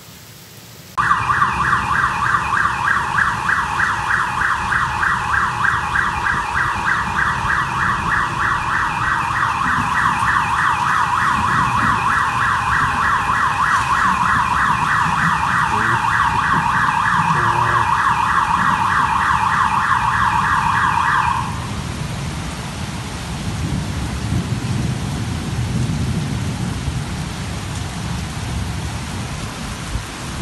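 A car alarm sounds a loud, fast-pulsing electronic tone over heavy rain and cuts off abruptly about two-thirds of the way through. The heavy rain carries on alone after it.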